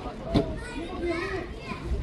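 Voices of players and onlookers calling out across an outdoor court, with one sharp knock about a third of a second in.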